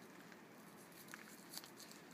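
Near silence, with a few faint sharp clicks and scrapes from a knife cutting the belly off a sockeye salmon on a plastic table, two of them a little over a second in.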